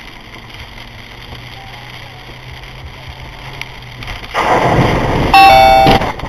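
Car interior road noise with a low hum, then about four seconds in a sudden loud rush of noise. About a second later comes a loud, steady car horn blast, which cuts off near the end.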